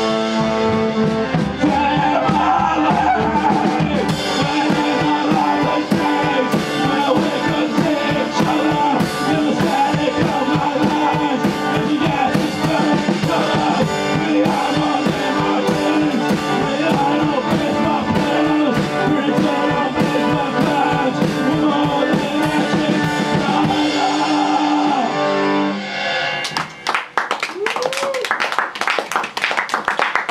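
Accordion and drum kit playing live, the accordion's held chords over a steady drumbeat. The song ends a few seconds before the end, followed by audience clapping.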